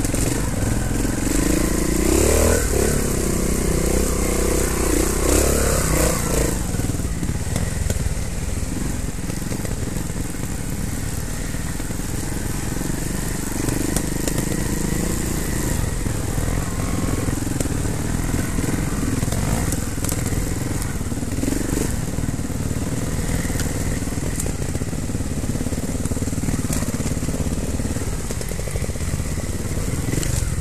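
Trials motorcycle engine heard from on board, revving up and down several times over the first few seconds as the bike climbs the rough forest trail, then running more evenly at low throttle.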